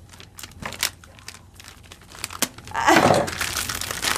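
Product packaging being handled and pulled open: crinkling and rustling with scattered sharp clicks, loudest about three seconds in.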